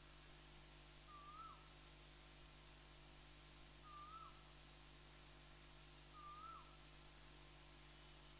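A bird calling faintly three times, about two and a half seconds apart: each a short whistled note that holds steady and then drops at the end. A faint steady low hum lies underneath.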